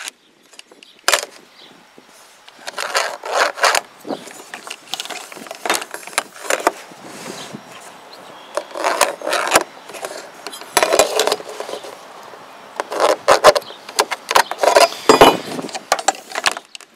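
A metal speed square and a carpenter's pencil worked on a vinyl siding panel: intermittent pencil scratches and the square scraping and tapping on the vinyl. Louder knocks and rattles come near the end as the panel is handled and the square set down.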